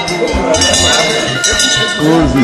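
Traditional processional music: a struck metal bell ringing over a steady drum beat with rattles or shakers.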